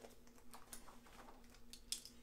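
Faint light clicks and rustling of a pen being handled, with one sharper click near the end.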